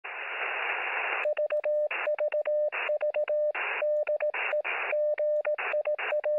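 Morse code sent as a steady mid-pitched beep in short and long elements, heard through a radio receiver: static hiss alone for about the first second, then hiss rushing into every gap between the beeps.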